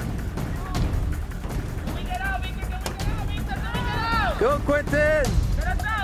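Several high-pitched voices shouting from the sideline or field, their calls rising and falling and overlapping. They start about two seconds in and are loudest near the end, over a steady low rumble.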